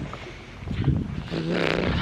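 Wind buffeting the microphone in a low rumble, with a short hummed 'mm' from the walker about a second and a half in.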